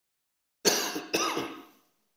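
A man coughing twice into his hand, the coughs about half a second apart, the second one trailing off.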